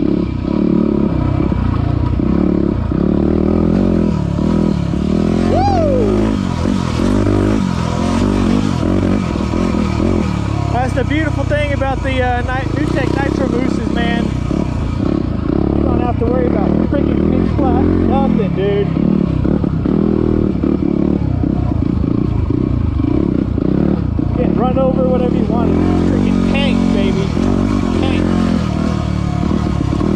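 Yamaha WR250R's single-cylinder four-stroke engine working up a rocky trail, its revs rising and falling constantly with the throttle and gear changes.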